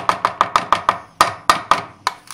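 Metal spoon knocking against the sides of a plastic tub while stirring half-frozen ice cream base, scraping the frozen edges into the middle. A quick run of about six knocks a second, then a short pause and a few more spaced-out knocks.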